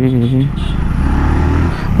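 Motorcycle riding at low speed in heavy truck traffic: wind on the rider's microphone with a steady low engine and traffic rumble from about half a second in.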